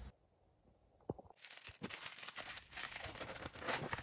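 Silence for about a second, then faint, irregular rustling and scraping of corrugated cardboard being handled and folded by hand.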